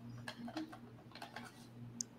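Faint, scattered small clicks and ticks over a low steady electrical hum.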